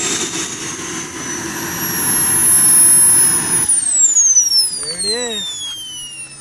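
Model jet turbine of a kerosene-fuelled RC jet running at idle, a high whine over a steady rush, then shut down about three and a half seconds in. The rush cuts off and the whine falls steadily in pitch as the turbine spools down.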